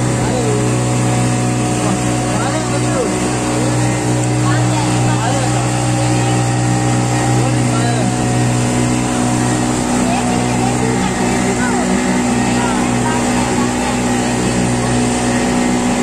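Motorboat engine running at a steady, constant drone, with passengers' voices chattering over it.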